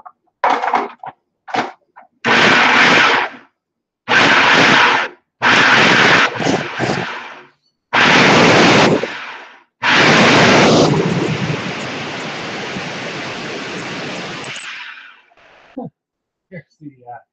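Food processor pulsed in about half a dozen short bursts of a second or so, chopping tomatoes, then run for several seconds in one longer spell that tails off near the end. The motor is switched on and off in pulses to keep the tomato purée coarse rather than juice.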